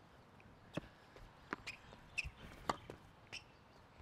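Faint, sharp pops of a tennis ball bouncing on a hard court and being struck with a racket as a player runs the ball down for a between-the-legs tweener shot, with his footsteps scuffing on the court in between.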